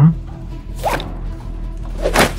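A brief zip-like rasp about a second in, over quieter background music, with a short vocal sound right at the start.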